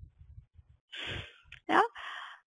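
A person sighing into the microphone about a second in, an unvoiced breath out, followed by a short spoken 'yeah'.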